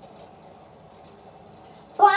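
Low, steady background hiss of the room with no distinct sound events: a pause between lines.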